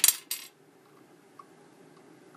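A quick run of sharp clicks in the first half-second, a hand turning the rotary selector dial of an Extech clamp meter through its detents.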